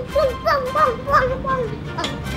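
A young child's high-pitched voice in several short, quick phrases, stopping shortly before the end.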